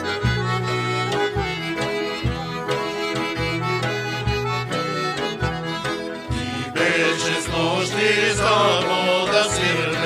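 Bulgarian folk band music led by accordion over a steady beat. Men's voices come in singing about seven seconds in.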